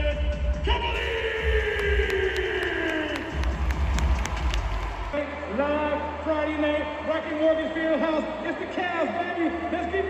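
Arena sound system playing bass-heavy music under a long, drawn-out call from the public-address announcer whose pitch slides down. About five seconds in the sound cuts to a voice over the arena speakers without the heavy bass.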